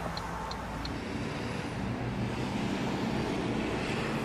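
Road traffic passing outside a parked car, heard from inside the cabin as a low rumble that swells a little partway through as a vehicle goes by. Faint, evenly spaced ticks of the hazard-light flasher relay are heard near the start.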